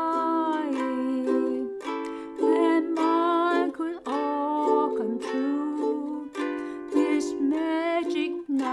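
Ukulele strummed in a slow, even rhythm, each chord ringing on between strokes.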